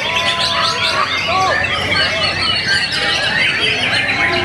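White-rumped shamas singing over one another, dense and continuous: clear whistled notes that slide down and up, woven with quick chattering phrases.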